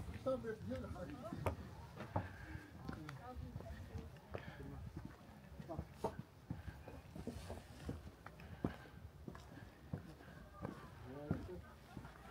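Indistinct voices of people talking, loudest near the start and again near the end, with scattered clicks and footsteps.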